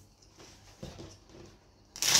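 Faint handling of a tarot deck and its cardboard box, with a couple of soft taps about a second in.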